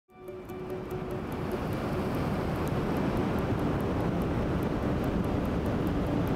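Surf and wind on an ocean shore: a steady rushing noise, heaviest in the low end, fading in over the first second, with faint music underneath.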